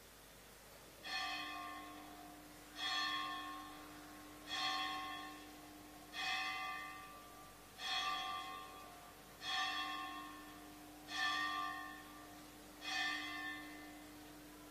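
A bell struck eight times at an even, slow pace, the strokes about 1.7 seconds apart, each ringing and dying away before the next. A steady low hum runs beneath.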